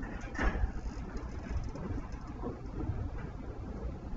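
Quiet room tone: a steady low hum with faint scratching and rustling of a pen writing on paper, and a brief louder rustle about half a second in.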